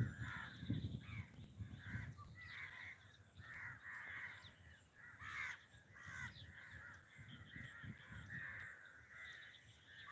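Crows cawing over and over, their calls overlapping, with a brief low rumble at the very start.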